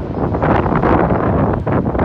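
Wind buffeting the microphone, a loud uneven rumble and rush that swells and eases.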